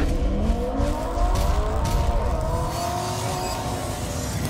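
A car engine revving, laid in as a sound effect: its pitch climbs during the first second, then holds high and eases off slightly toward the end.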